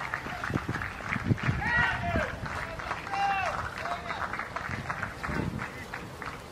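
Men's voices calling out across an outdoor cricket field in short shouts, with a few low thumps in between.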